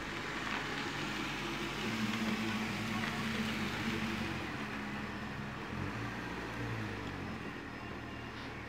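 A car pulling slowly into a sandy yard and coming to a stop, its engine running steadily with tyre noise on the ground. The sound swells over the first couple of seconds as it comes closer.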